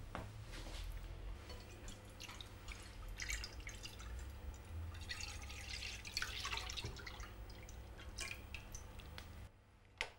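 Whole milk pouring from a plastic jug into a stainless steel frying pan, faint and splashy with drips.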